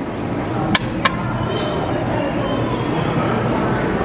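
Steady background murmur of a busy public space, with voices in the distance, and two sharp clicks about a second in.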